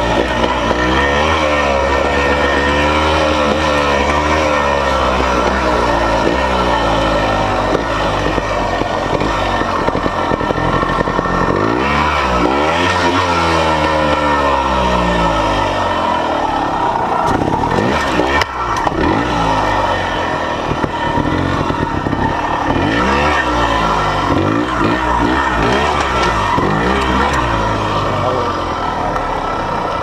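Trials motorcycle engine under a rider working a rocky section at low speed, the throttle blipped so the revs rise and fall again and again. There is a brief knock a little after halfway.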